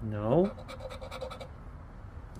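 A short rising vocal sound from the man, then a run of quick scraping strokes as a poker-chip scratcher rubs the coating off a scratch-off lottery ticket.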